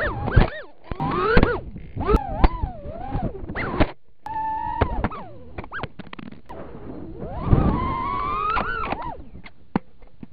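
Small 2.5-inch FPV quadcopter's brushless motors and props whining as heard from its onboard camera. The pitch swoops up and down fast with the throttle, holds one steady tone for under a second near the middle, then climbs in a long rising whine near the end. A few sharp clicks are mixed in.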